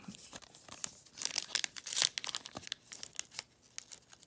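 Foil wrapper of a trading card pack being torn open, crinkling and crackling in a run of sharp crackles that starts about a second in and is loudest about two seconds in.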